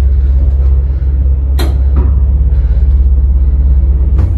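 1978 ZREMB passenger lift running: a loud, steady low hum from the car and its machinery, with one sharp click about one and a half seconds in and a softer knock just after.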